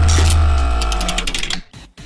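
Short news-transition sound effect: a deep boom that fades over about a second and a half under a held musical tone, with a fast run of mechanical ticks, dropping away near the end.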